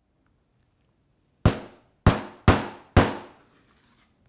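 Four sharp hammer blows on a nail set in a wooden table, about half a second apart, each dying away quickly.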